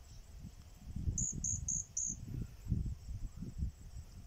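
Four short, high chirps from a small animal in quick, even succession about a second in, over an irregular low rumble.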